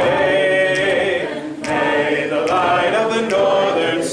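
Unaccompanied singing of a folk-style song, with long held notes in phrases and a short breath break about a second and a half in.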